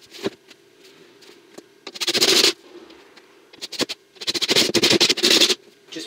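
Cordless impact driver driving plasterboard screws through the board into the timber rafters. There are two rattling bursts: a short one about two seconds in and a longer one of over a second near the end.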